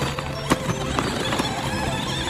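Battery-powered RC Grave Digger monster truck with big foam tires driving across asphalt: a steady motor hum with a few sharp knocks.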